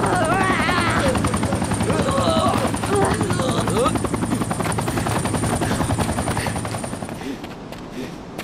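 A rapid, even, chopping drone like helicopter rotors on the film soundtrack, with men shouting over it in the first half. It fades out near the end.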